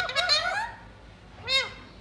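Psittacula parakeet calling: a quick run of short repeated notes, about six a second, ending in a rising note about half a second in, then a single short call at about one and a half seconds.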